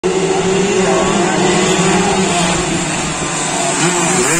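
A pack of two-stroke Yamaha F1ZR race motorcycles running at high revs as they approach. The engine pitch dips and climbs again near the end.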